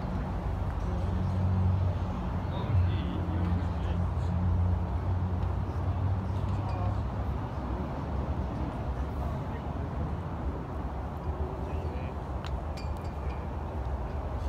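Outdoor background noise with a low steady hum through the first half, then a few light clicks near the end.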